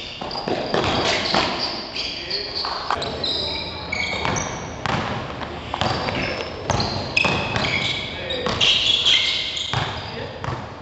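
A basketball bouncing on a hard indoor gym court as players dribble, sharp repeated thuds throughout, over players' voices calling out.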